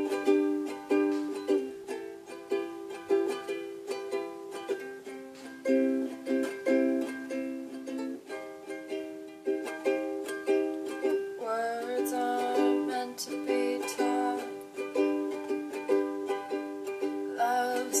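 Ukulele strummed in steady, repeated chords for a song's intro, each strum ringing and fading before the next. A woman's singing voice comes in at the very end.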